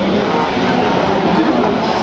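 Touring autocross race cars' engines running hard as the cars race on a dirt track.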